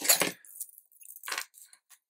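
A sheet of scrapbook paper rustling and sliding as it is handled, loudest in the first half second, followed by a few faint scrapes.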